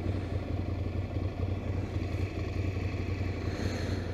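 Ducati Scrambler's air-cooled 803 cc L-twin idling, a steady low pulsing throb.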